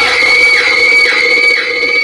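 A loud held keyboard chord, a dramatic music sting, with a voice laughing over it in short falling strokes about every half second.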